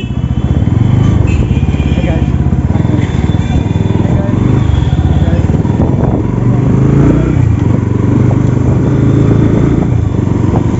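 Bajaj Pulsar NS200's single-cylinder engine running as the motorcycle is ridden slowly through traffic, the revs rising and easing a few times.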